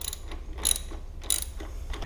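Socket ratchet clicking a few times as it turns the nut on the motorcycle's top rear-shock mounting bolt, working it loose.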